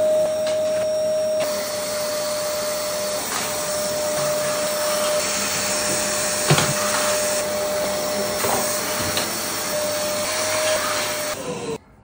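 Bagless canister vacuum cleaner running steadily with a constant whine over its rushing air noise, and one sharp knock about halfway through. It is switched off near the end, the whine dropping in pitch as the motor cuts out.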